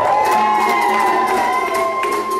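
A group cheering and whooping as a pop-dance track ends. One long high note is held throughout, and the beat has stopped.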